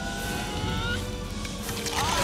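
Film soundtrack playing: sustained music tones over a steady, noisy rumble of sound effects.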